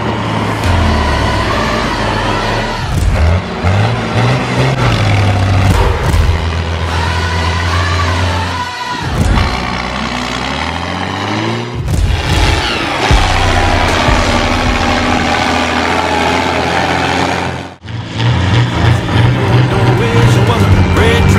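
Diesel farm tractor engines running hard and revving up as they pull loaded dump trailers. The pitch rises in places, and abrupt cuts join several clips.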